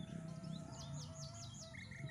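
A bird calling: a quick series of about five high, hooked notes, then a short run of lower, evenly spaced notes near the end.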